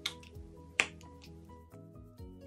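Background music with two sharp clicks, the second and louder one a little under a second in.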